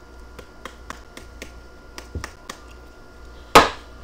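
Trading cards being flipped through in gloved hands: a run of light clicks as cards are slid off the stack, then one louder, sharper click near the end.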